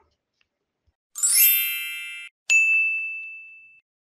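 Synthetic chime sound effects: a bright shimmering chime of many high tones swells in about a second in and cuts off sharply, then a click and a single high ding that rings out and fades.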